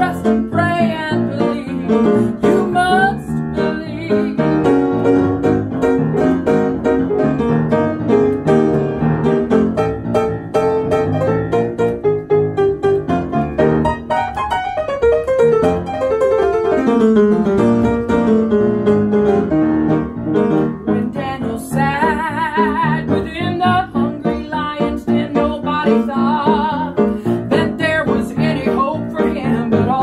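Piano playing the instrumental break of a country gospel song, with steady chords and melody between sung verses.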